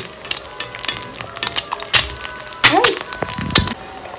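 Hot oil sizzling around an egg frying in a black frying pan, with sharp crackles and pops scattered throughout, the loudest about two seconds in and near three seconds.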